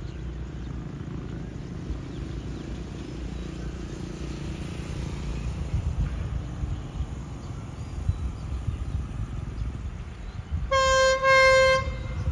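SRT QSY-class diesel-electric locomotive 5205 approaching with a low rumble, then sounding its horn near the end: one loud single-note blast about a second long, with a brief break in the middle.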